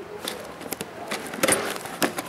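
Cardboard water-pump box being turned over by hand and its lid flaps opened: scattered rustles and light taps, the loudest cluster about one and a half seconds in.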